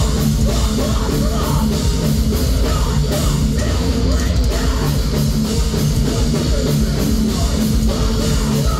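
A live heavy rock band playing loud and without a break: distorted electric guitars, bass and a drum kit.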